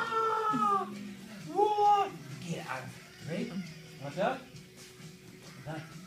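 Dog whining in several drawn-out, meow-like cries while playing with a floppy disc, the first and loudest falling in pitch, another about two seconds in, then shorter, quieter ones.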